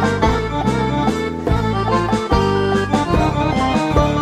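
A Greek laïkó band playing an instrumental passage between sung verses of a live recording: a melody instrument over a plucked-string and bass rhythm, with a steady beat.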